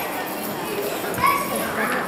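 Children's voices chattering and calling out together, with one short, high call just over a second in.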